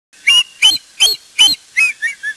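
Killdeer calling: five loud, shrill calls in quick succession, about two and a half a second, each sliding down in pitch.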